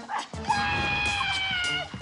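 A woman's long, high-pitched squeal held for over a second, its pitch dropping off sharply at the end, over background music.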